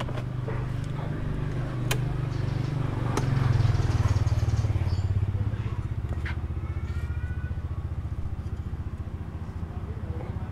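An engine idling steadily, its note swelling a little about three and a half seconds in, with a couple of sharp clicks early on.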